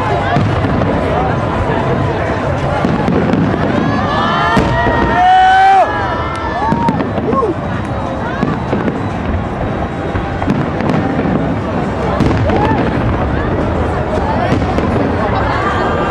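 Aerial fireworks shells bursting overhead with repeated sharp pops and crackle, over a crowd of people shouting and talking; a brief held tone stands out about five seconds in.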